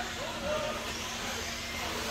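Several radio-controlled off-road buggies racing on an indoor dirt track: a steady wash of motor whine and tyre noise, echoing in a large hall, with faint pitch glides as the cars speed up and slow.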